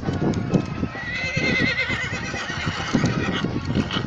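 A horse whinnying once, one long quavering call starting about a second in, over the steady walking hoofbeats of a group of horses on a dirt track.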